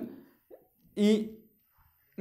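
Only speech: a voice speaking Malayalam in a few short syllables separated by brief pauses.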